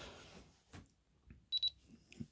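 Jeti DS-24 radio transmitter giving two quick high beeps about one and a half seconds in, as it detects a newly switched-on, unregistered receiver. A faint click comes just before.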